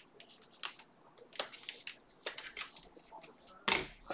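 Trading cards being flicked through and slid against each other by hand, giving a string of short, crisp flicks and snaps. A louder thump comes near the end.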